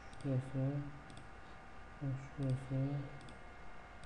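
A few sharp computer mouse clicks while objects are picked in a CAD program, with a man's voice murmuring two short phrases, one near the start and one past the middle.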